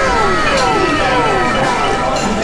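A run of overlapping whistle-like tones, each sliding downward in pitch, about two or three a second, laid over restaurant background noise. It sounds like an added comedy sound effect.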